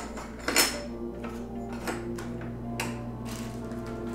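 A handful of light clicks and taps as small carbon-fibre motor plates are set down on a table, the sharpest about half a second in and softer ones after, over steady background music.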